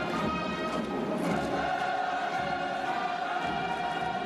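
Choral music, with a choir singing long held notes.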